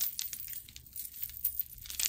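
Costume jewelry clicking and clinking as a chunky faux pearl necklace with gold-tone chain links is lifted and handled: a run of light, irregular small clicks.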